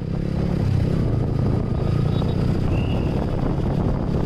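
Motorcycle riding through city traffic: a steady low engine rumble with road noise, and a brief faint high tone about three seconds in.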